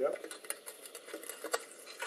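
Light, scattered clicks and clinks of the glass mercury-arc rectifier bulb and its metal fittings being handled and seated in their holder.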